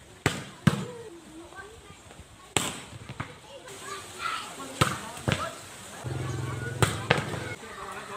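A volleyball being struck by players' hands and arms in a rally: a string of sharp slaps, about seven in all, spaced unevenly through the rally. Players call and shout between the hits.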